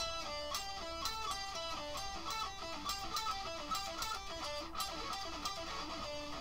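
Electric guitar playing picked single notes, about four a second, in a short phrase that repeats over and over.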